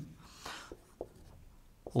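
Dry-erase marker writing on a whiteboard: a soft scratchy stroke in the first second, then a few faint taps of the pen tip.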